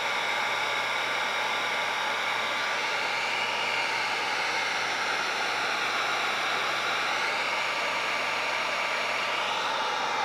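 Handheld electric heat gun running steadily, blowing an even rush of hot air to dry and warm vinyl wrap film.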